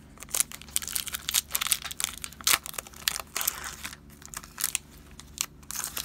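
A Pokémon booster pack's foil wrapper being torn open and crinkled by hand: a rapid run of sharp crackles for the first few seconds, then sparser crinkles.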